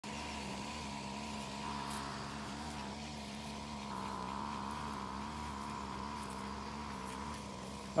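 Steady low hum at a single pitch that wavers slightly and regularly, with a fainter higher tone above it.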